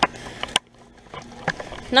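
2004 Comfort Range heat pump outdoor unit in defrost mode, its fan stopped: a faint steady low hum that fades out about half a second in and returns at the end, with several sharp clicks.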